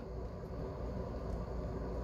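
Quiet, steady low room hum with the faint scratch of a pen writing on paper.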